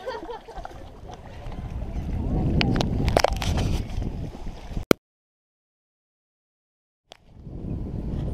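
Wind rumbling on the camera microphone with lake water sloshing against a stone wall, growing louder about two seconds in, with a few sharp clicks around three seconds. The sound cuts out to dead silence for about two seconds past the middle, then the wind rumble returns.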